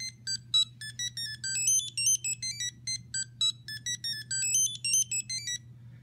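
ImmersionRC Vortex 250 Pro drone playing its startup tune as a fast melody of short electronic beeps at shifting pitches, several notes a second, stopping shortly before the end. It marks the board restarting after the OSD firmware update. A steady low hum runs underneath.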